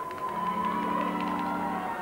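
Piano accordion holding a low sustained chord that starts about half a second in and stops just before the end, with a thin higher tone sliding slowly downward above it and a few faint clicks.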